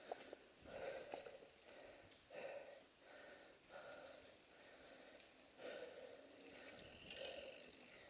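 Near silence, with a few faint, brief sounds.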